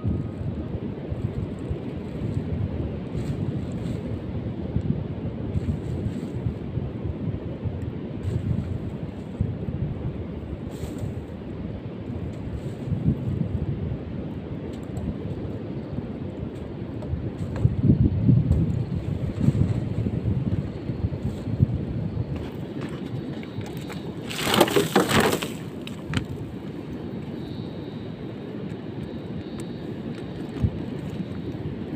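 Wind on the microphone on an open beach: a steady low rumble that swells in gusts. About twenty-five seconds in comes one brief, louder burst of rustling noise.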